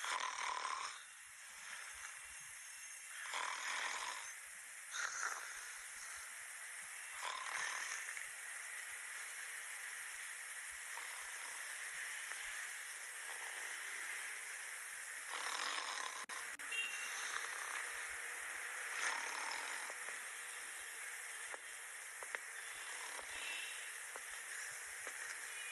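A sleeping person snoring, breathy snores every few seconds at uneven intervals over a steady background hiss.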